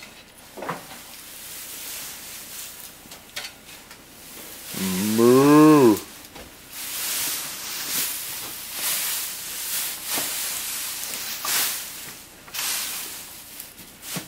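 A single loud moo from a calf, about five seconds in, lasting just over a second and rising then falling in pitch. Around it are softer rustling and a few light knocks.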